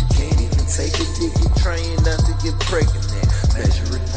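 Hip hop track playing: rapped vocals over a beat with a heavy, steady bass.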